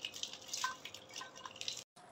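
Lumps of soil being crumbled by hand and falling into a shallow metal basin: several scattered light ticks, some with a brief ring from the metal.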